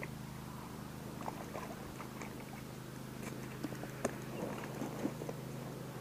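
Faint scattered clicks and rustles from fishing tackle and handling as a small walleye is reeled in and lifted to hand, over a low steady hum.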